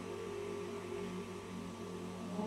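A choir singing slow, sustained chords, several voices holding notes together, with a steady electrical hum underneath.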